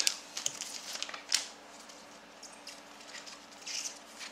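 Trading-card pack wrapper crinkling and tearing as the pack is opened and the cards are pulled out, with scattered rustles and a few sharper crackles.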